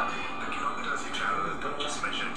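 Speech over background music, with the boxy sound of playback through a small device speaker.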